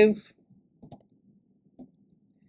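The tail of a spoken word, then a few faint, scattered key clicks from a computer keyboard as code is typed.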